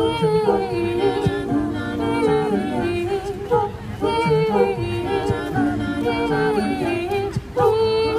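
Mixed a cappella group singing into microphones through a PA, several voices holding chords together under a lead line, with no instruments.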